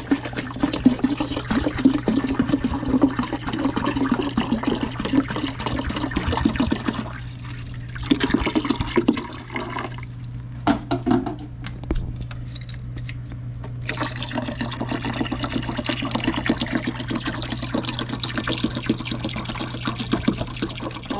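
Water pouring from a plastic bottle into the empty plastic reservoir of a countertop ice maker. The pour breaks off briefly about seven seconds in and again for about four seconds midway, then carries on.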